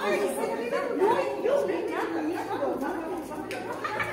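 Several people talking over one another in lively chatter, in a large, echoing hall.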